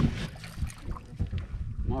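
Wind buffeting the microphone in an irregular low rumble, over water splashing against the boat's hull.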